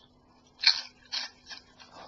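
Prawn cracker being bitten and chewed: a few sharp, irregular crunches, the first and loudest about two-thirds of a second in, then smaller ones roughly every half second.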